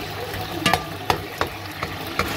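Pork loins bubbling and sizzling in a reduced white-wine sauce in a pan, with a metal skimmer being moved through it and knocking against the pan about four times in the second half.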